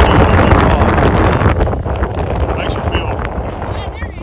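Wind buffeting the microphone on an open boat on the river: a loud, rushing rumble that eases a little toward the end.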